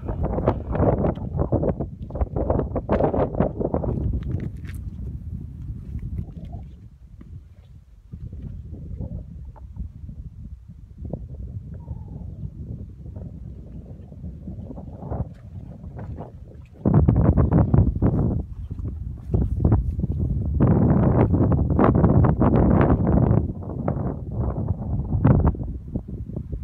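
Wind buffeting the microphone in gusts: strong at the start, weaker in the middle, then strong again through the last nine seconds or so.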